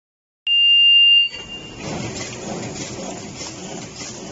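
A loud electronic beep, one steady high tone just under a second long, sounds about half a second in; it then gives way to the steady running noise of a pharmaceutical carton packing line with a desiccant sachet inserter, with a faint regular mechanical pulse.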